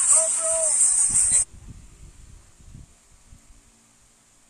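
A person's voice over a loud, bright hiss for about a second and a half, cut off abruptly; after it come only faint low rumbling bumps that die away into quiet hiss.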